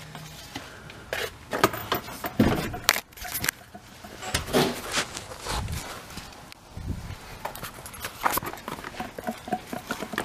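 Irregular knocks, scrapes and clatter of plastic and metal as the removed mechanical clutch fan and its plastic shroud are handled and moved, with a few dull thumps scattered through.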